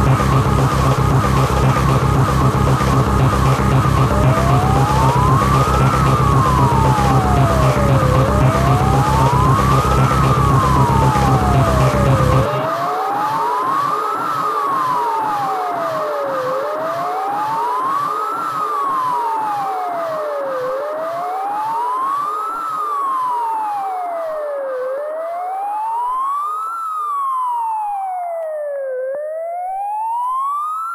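Electronic track made on an Amiga 500: a steady, heavy kick-drum beat, joined about four seconds in by a siren-like synth tone rising and falling about every four seconds. About twelve seconds in the kick and bass drop out, leaving the siren sweeps over a lighter, fainter rhythm.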